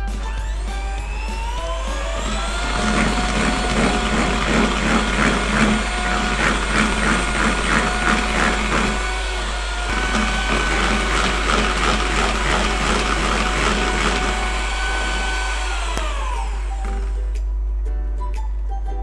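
Electric hand mixer beating eggs and powdered sugar in a plastic bowl: the motor whine rises as it speeds up, runs steadily with a rattling in the first half, dips briefly about halfway and picks up again slightly higher, then winds down near the end as it is switched off.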